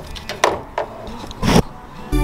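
A few sharp clicks and knocks from a pickup's taillight wiring harness and its bulb sockets being handled in the empty taillight opening. The loudest comes about a second and a half in.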